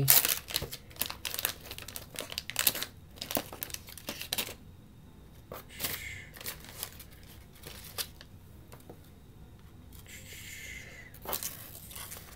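Wax-paper wrapper of a 1982 Fleer baseball card pack crinkling and tearing as it is peeled open by hand. The crackling is dense for the first four seconds or so, then thins to scattered soft crackles.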